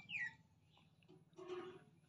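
An animal's brief high-pitched call, gliding downward, just after the start, followed by a fainter, hissier sound about a second and a half in.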